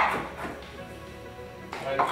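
Chef's knife striking a wooden cutting board: one sharp knock at the start and a softer one near the end, over background music.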